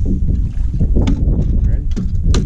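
Wind buffeting the microphone on an open bass boat, a loud, steady low rumble, with a few light clicks about a second in.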